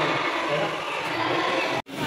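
Indoor swimming-pool hubbub: a steady mix of children's voices and water noise. It drops out briefly near the end.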